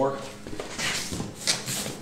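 Cardboard flaps of a large shipping box being pulled open, scraping and rustling with a few sharp crackles, starting about half a second in.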